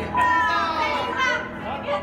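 A crowd of excited voices shouting and calling out together, many overlapping at once, as a large group poses for a photo.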